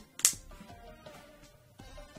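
A single sharp snap about a quarter-second in as a clip of the Toshiba Portégé Z835's plastic screen bezel catches on the lid, followed by faint steady background music.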